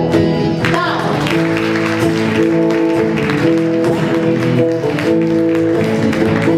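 Live acoustic ensemble of guitars and double bass playing held chords of a gospel song.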